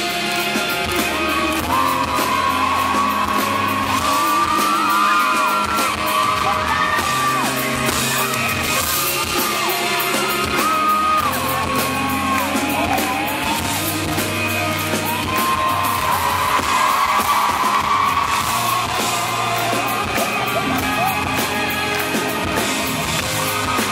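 Live pop-rock band playing, heard from within the audience in a large hall, with a voice singing over drums and guitar and shouts and whoops from the crowd.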